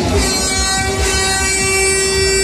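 A single long horn blast at one steady pitch from a fairground ride, held for about two seconds over a low rumble, breaking in between stretches of the ride's music.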